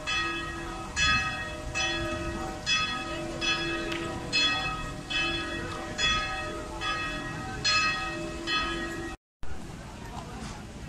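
Church bells ringing, one stroke about every 0.8 seconds, each stroke ringing on over the next. The ringing cuts off abruptly near the end and gives way to street background noise.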